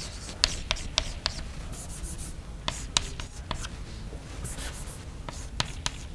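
Chalk writing on a blackboard: irregular sharp taps and short scratchy strokes as the chalk marks out symbols.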